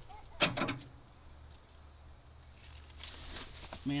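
A single sharp click about half a second in as the battery cable makes contact on the rewired 12-volt system, then only a faint low hum and a soft hiss; the locked-up engine does not turn over.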